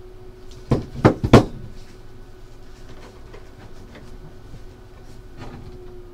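Stiff card-stock 8x10 photo envelopes being handled and set down on a tabletop: three quick knocks close together in the first second and a half. After that, only a faint steady hum.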